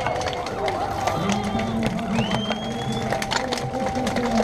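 Cyclists setting off together in a mass race start: a scatter of sharp clicks from shoes clipping into pedals and bikes moving off, under voices and music.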